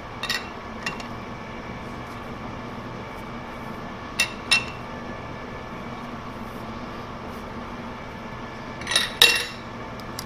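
Metallic clinks of a chuck key on the jaw screws of a large four-jaw lathe chuck as the jaws are adjusted to centre a shaft. The clinks come in short pairs: just after the start, around four seconds in, and loudest near the end, over a steady shop hum.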